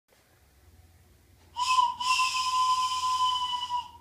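Handheld wooden train whistle blown in a short blast and then a longer one of about two seconds, sounding several steady tones together.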